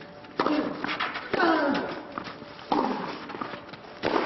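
Tennis rackets striking the ball during a serve and rally, three hits about 1 to 1.4 seconds apart, each with a player's grunt that falls in pitch.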